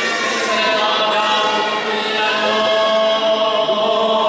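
Orthodox liturgical chant for a baptism, sung by several voices in long held notes that shift slowly in pitch.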